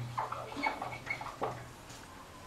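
Dry-erase marker squeaking and scratching on a whiteboard while a word is written: a quick run of short squeaks that stops about a second and a half in.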